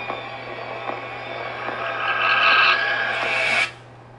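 Horror movie trailer soundtrack playing through speakers: a tense swell builds over about two seconds, with faint knocks roughly once a second before it, then cuts off abruptly near the end as the picture goes to black, leaving only a low steady hum.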